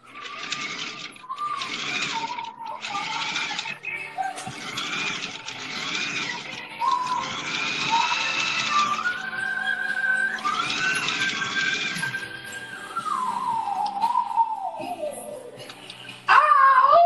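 Music with a high voice singing, holding long notes and bending between them. Near the end it slides down in one long fall.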